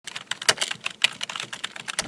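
Computer keyboard typing: a quick, uneven run of key clicks.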